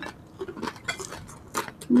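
Close-miked chewing of crispy fried pork: a string of irregular short crunches and wet mouth clicks, ending in a hummed 'mm' of enjoyment.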